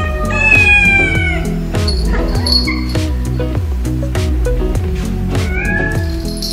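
A domestic cat meowing over background music: one long meow falling in pitch about half a second in, and a shorter rising call near the end.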